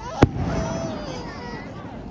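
An aerial firework shell bursting with one sharp bang about a quarter second in, followed by people's voices.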